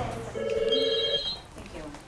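Telephone ringing: a single electronic trilling ring lasting under a second.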